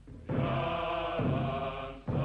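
A group of voices chanting in unison, a slow repeating phrase with a fresh stress about every second: a ceremonial chant on an old film soundtrack.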